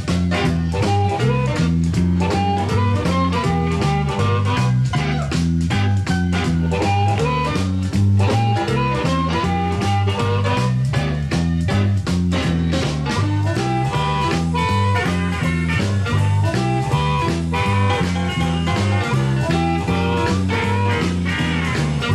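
Live electric blues band playing an instrumental passage with a swinging feel: electric guitar over a stepping bass line and drums.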